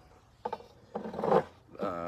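Mostly quiet, with a short click about half a second in, then a brief word or vocal sound from a man about a second in and again near the end.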